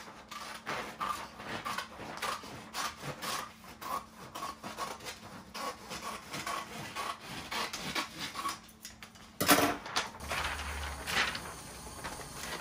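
Scissors snipping through a sheet of freezer paper in a steady run of strokes, about three a second. About nine and a half seconds in comes one loud rustle of the stiff paper being handled, then more crinkling.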